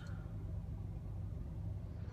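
A steady low hum inside the cabin of a parked compact SUV, with faint background hiss.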